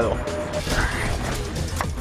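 Background music with a mechanical clicking sound over it, and one sharp click near the end.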